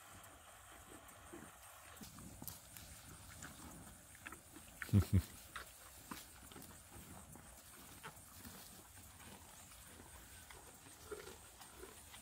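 Cattle chewing and crunching on sweet potatoes and vines, with scattered crisp crunches and two short, louder low sounds close together about five seconds in.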